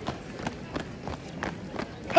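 A drill squad's boots striking a hard sports court in step, about three sharp stamps a second.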